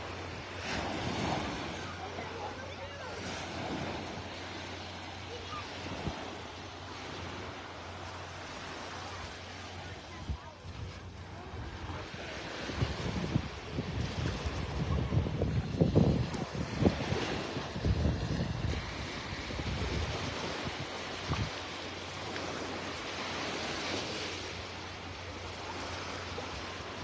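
Small, gentle waves lapping and washing up on a calm sandy shore. In the middle, wind buffets the microphone in low rumbling gusts.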